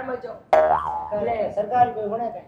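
Cartoon-style comedy 'boing' sound effect that starts suddenly about half a second in, sliding in pitch, followed by voices talking.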